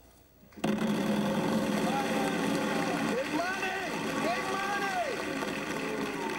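Wheel of Fortune's big wheel spinning, its pointer clicking rapidly over the pegs, starting about half a second in after a brief silence, with voices calling out over it.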